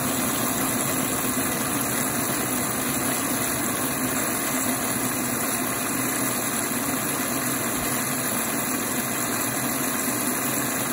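Steady rush of water spraying into the detergent drawer of a Bosch WFO2467GB washing machine as it fills.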